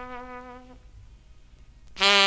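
A held trumpet note in a slow Dixieland jazz number fades and stops under a second in. A quiet pause follows, with only the vinyl record's low rumble and faint hiss, and the band comes back in loudly right at the end.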